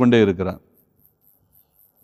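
A man's speaking voice that breaks off about half a second in, followed by a pause in which only a faint, evenly repeating high-pitched chirp is heard.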